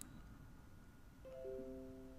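A faint, short chime of four quick mallet-like notes, entering one after another about a second in and ringing on for under a second, with a soft click at the very start.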